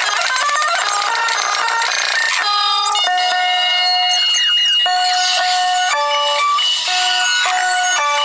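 Live rock band with drum kit, played back greatly sped up, so the whole performance comes out as a high-pitched jumble of quickly stepping notes with almost no bass.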